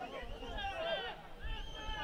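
Faint, distant voices calling out on a football pitch, over a low rumble.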